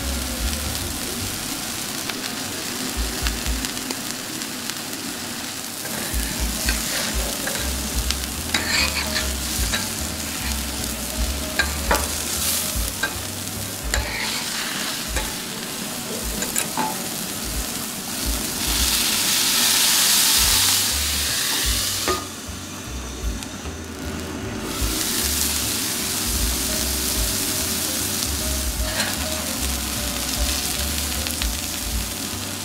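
Wagyu beef hamburger patties sizzling on a hot griddle, with a few sharp clicks scattered through. The sizzling swells louder for a few seconds about two-thirds of the way through.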